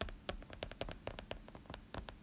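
A stylus tip clicking and tapping on a tablet's glass screen during handwriting, a quick, uneven run of small clicks, about six or seven a second.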